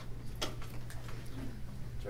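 Room tone in a meeting room: a steady low electrical hum, with one sharp click about half a second in.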